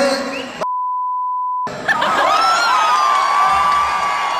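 A steady one-second censorship bleep blanking out an abusive word shouted from a concert stage. Before and after it, a raised voice over the loud noise of a packed hall's crowd.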